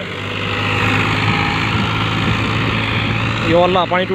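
Farmtrac Champion tractor's diesel engine running steadily under load as it drags a rear levelling blade through soil.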